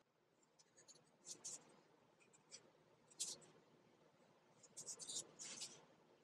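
Black marker drawing on a cardboard cutout: faint, short scratchy pen strokes, a few single ones and then a quick run of them near the end.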